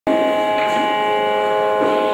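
A steady instrumental drone of several held tones, like a reed drone or harmonium chord, with one lower note shifting just before the end. It sets the pitch before the singing begins.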